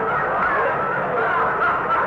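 Live studio audience laughing steadily at a radio comedy gag, heard on a narrow-band 1940s broadcast recording.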